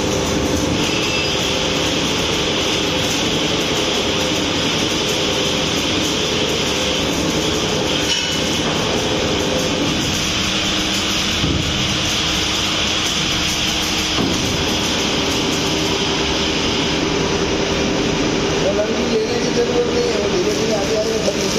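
Horizontal metal-cutting band saw running steadily, its motor humming and the blade cutting a steel bar with a high hiss. The hiss fades near the end while the motor keeps humming.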